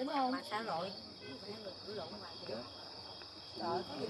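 Indistinct chatter of diners' voices, over a steady high chirring of crickets.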